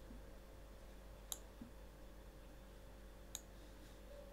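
Two sharp computer mouse clicks, about two seconds apart, over faint room hum.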